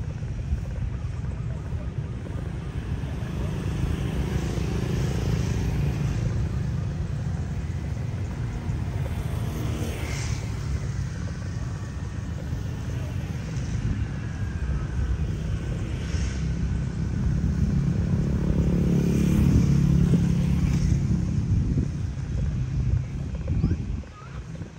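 Steady outdoor background dominated by a low, choppy rumble that grows louder about three quarters of the way through, with faint voices underneath.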